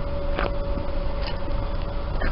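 Wind rumbling on a handheld camera's microphone outdoors, a steady low noise with a faint steady hum and a short click about half a second in.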